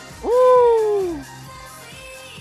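A man's loud hooting "ooh" of excitement, shooting up in pitch and then sliding slowly down over about a second, over pop music playing underneath.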